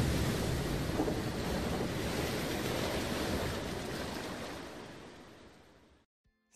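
Rushing-water sound effect for an animated logo intro: a steady, noisy wash like surf that slowly dies away and fades out near the end.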